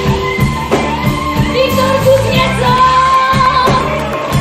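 Live band with drum kit, bass and electric guitars playing, with a woman singing; a long held high note runs through the second half.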